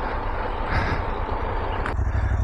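Adventure motorcycle engines idling at a stop: a low, steady rumble.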